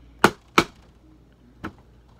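Three sharp knocks, two loud ones in quick succession and a fainter one about a second later, as a plastic squeeze bottle of glue is shaken and knocked to get clogged, dried-up glue flowing.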